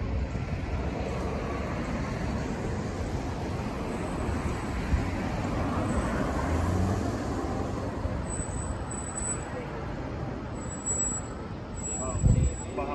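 Road traffic noise: a car passes close by, its sound swelling about halfway through and then easing off.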